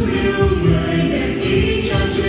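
Vietnamese Catholic spring (Tết) song: a choir singing over instrumental backing, with a cymbal-like crash near the end.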